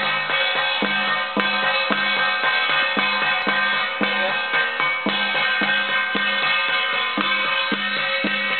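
Chinese temple ritual percussion: a drum beaten in a steady rhythm about twice a second, with a sustained ringing layer of cymbals and gongs over it.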